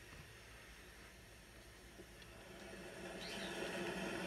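Faint handling of tarot cards: a few light taps, then a soft rustle and slide of cards that grows louder near the end as the cards are gathered into the deck.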